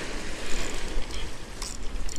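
Wind buffeting the microphone and surf washing against jetty rocks, with a few clicks from a spinning reel being cranked to bring in a small fish.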